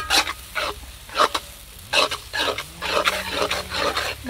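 Metal spatula scraping and stirring sliced onions in a black iron wok, in quick irregular strokes, with the onions frying in the oil.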